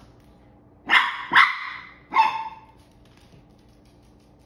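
Chihuahua puppy barking three times: two barks close together about a second in, then a third about a second later.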